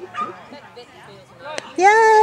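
A dog gives a loud, long, high-pitched yelp near the end, over faint voices.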